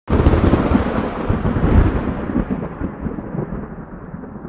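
Thunder sound effect: a sudden crack that rolls into a long, crackling rumble, fading and growing duller over the seconds.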